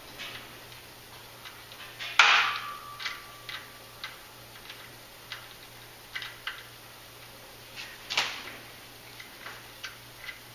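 A 1/8-inch 27 NPT thread tap being turned by hand in a drilled hole in the Duramax exhaust manifold, chasing the threads and clearing metal shavings: irregular metal-on-metal clicks and ticks, a few a second. The loudest click comes about two seconds in, with a short ring after it, and there is another strong click near the end.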